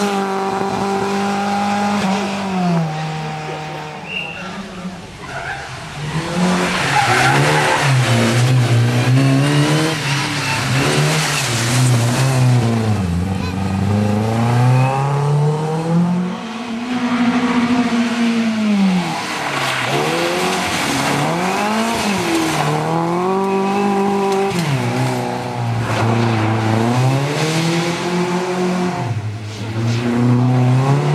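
Škoda Felicia rally car's engine revving hard through the gears as it drives past at speed, its pitch climbing and dropping again with each gear change and lift.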